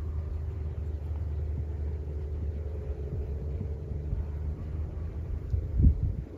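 A vehicle engine running steadily at low speed, with a thump near the end.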